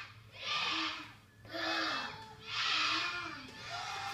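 A group of children counting down aloud on a children's TV programme, one shouted number about every second, played through a tablet's speaker.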